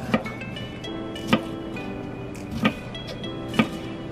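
A kitchen knife slicing a red bell pepper into strips, knocking on a wooden cutting board four times, about one stroke a second. Background music with held notes plays under it.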